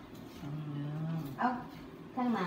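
A person's voice: a short, low, steady hum, then a brief vocal sound about a second and a half in.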